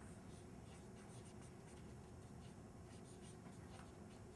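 Faint, irregular scratching and tapping of writing on a board, over quiet room tone.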